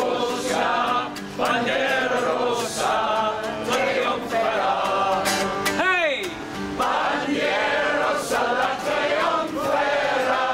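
Two men singing a folk song together in unison to a strummed acoustic guitar. About six seconds in, one voice gives a short swooping cry that rises and falls in pitch.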